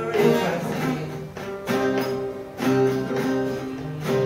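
Two acoustic guitars playing together in an instrumental passage, picked chords ringing and changing about once a second.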